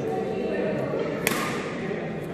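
A badminton racket striking the shuttlecock once, a sharp crack about a second in, over the murmur of spectators' voices.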